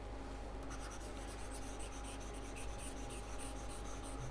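Faint scratching of a stylus moving over a pen tablet in repeated strokes, beginning a little under a second in, as a hand-drawn diagram is rubbed out with the eraser tool. A steady low electrical hum runs beneath.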